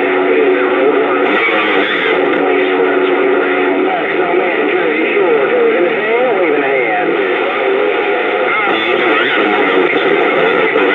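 Bearcat CB radio on channel 28 (27.285 MHz) receiving a strong signal through its speaker. It carries garbled, unintelligible voices mixed with steady whistle tones until about four seconds in, and wavering, gliding squeals throughout.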